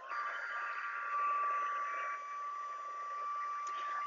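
Handheld heat embossing tool (heat gun) running, blowing hot air to melt embossing powder on stamped cardstock: a steady fan hiss with a thin, steady high motor whine.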